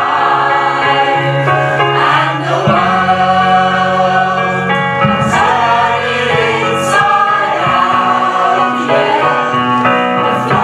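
Mixed-voice community choir of men and women singing together, holding long sustained chords, with a few brief sung 's' sounds cutting through.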